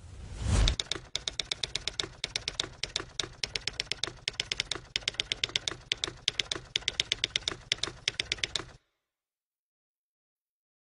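Typewriter sound effect: a rapid, uneven run of key strikes, several a second, that cuts off suddenly about a second before the end. It is preceded by a short low whoosh about half a second in.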